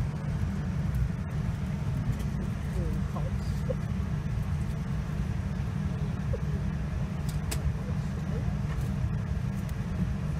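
Steady low rumble inside the cabin of a Boeing 787-9 airliner, with faint murmur of other passengers' voices.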